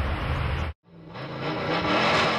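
A low outdoor rumble cuts off suddenly just under a second in. A recorded car engine revving then fades in: the 1962 Chevrolet hot-rod revving that opens a 1960s surf-rock record.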